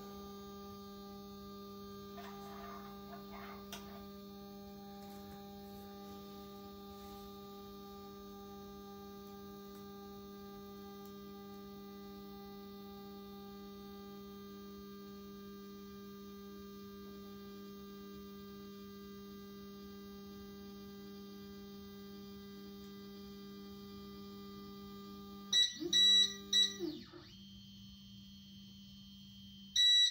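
Voxelab Proxima resin printer's Z-axis stepper motor driving the build plate down to its home position, a steady whine of several pitches. Near the end the motor winds down with a falling tone while the printer beeps in quick clusters, and it beeps again right at the end as it reaches home.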